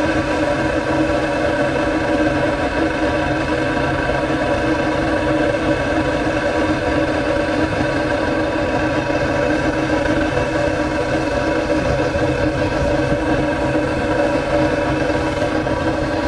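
Steady, unchanging hum and rush from a burner rig blowing hot exhaust out of the open end of a long metal pipe.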